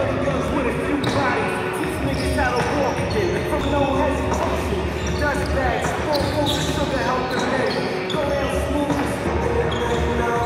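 A basketball dribbled on a hardwood gym floor, amid voices.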